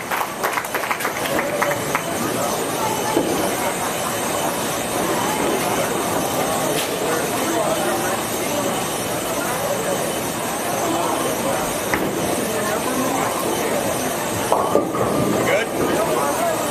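Bowling-alley din: distant crowd chatter over a steady rumble, with a couple of sharp clacks.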